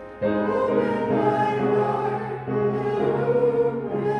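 A hymn being sung: held, sustained notes, with a new phrase starting just after the start.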